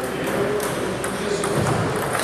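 Table tennis balls clicking sharply on table and paddles, several clicks spread across the moment, over background chatter in the hall.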